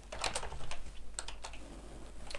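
Typing on a computer keyboard: a quick run of key clicks, thinning out in the second half.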